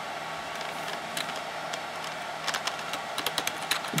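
A few scattered keystrokes on a computer keyboard, most of them in the second half, over a steady background hum.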